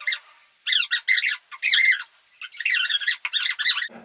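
Fast-forwarded voices, squeaky and high-pitched like chipmunks, in several quick garbled bursts with short gaps.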